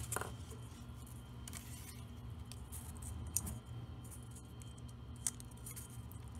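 Faint clicks and rustles of hands handling craft wire and small gold glitter Christmas ball ornaments, over a steady low hum.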